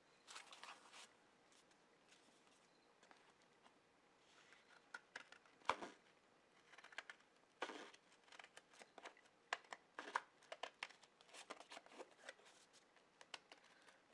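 Scissors cutting through a thick folded stack of paper: a run of faint, irregular snips and paper rustles, with one sharper click about six seconds in.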